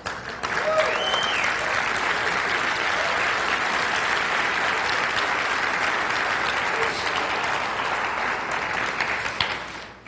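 An audience applauding steadily for about nine seconds, fading away just before the end, with a brief call from a voice about a second in.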